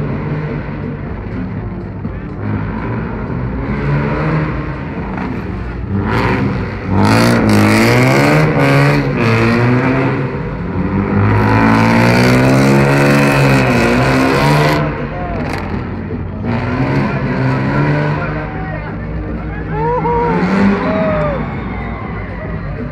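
BMW E30 saloon's engine revving up and down again and again as the car is driven hard through a cone slalom, loudest for several seconds in the middle as it passes close by, then fading back.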